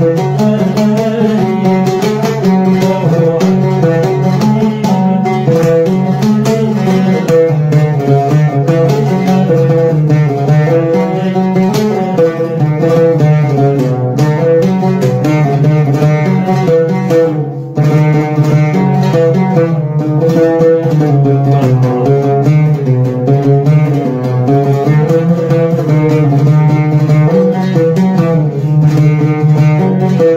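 Oud played with a plectrum in a Moroccan song melody, with a man's voice singing along. The playing goes on throughout, with a brief drop in loudness a little past halfway.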